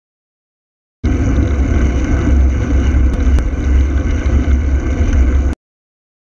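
Wind buffeting a bicycle-mounted camera's microphone while riding, a loud, unsteady low rumble mixed with road noise, with two small clicks midway. It starts abruptly about a second in and cuts off suddenly near the end.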